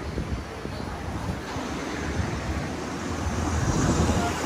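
Wind rumbling on the microphone of a handheld camera outdoors, a steady low noise that grows slightly louder toward the end.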